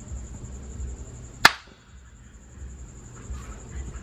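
A single sharp click from a laptop's pointer button, about halfway through, over a steady low hum and a faint steady high whine.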